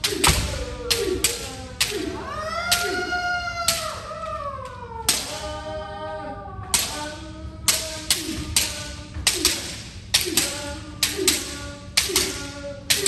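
Bamboo shinai striking the practice partners' kendo armour in rapid series, sharp cracks about two to three a second, as in a kirikaeshi drill of alternating head strikes. Two long drawn-out kiai shouts fill the middle, where the strikes thin out.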